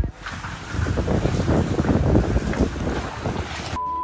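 Wind buffeting the microphone, a dense low rumble while the camera moves, opened by a sharp click. A steady high beep starts just before the end.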